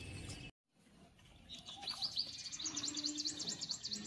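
Small birds chirping outdoors. After a brief dropout near the start, high chirps come in and build into a fast run of repeated high notes near the end.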